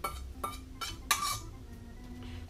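A metal utensil scraping and tapping against a small stainless steel bowl while emptying it into a ceramic bowl, giving a few short clinks.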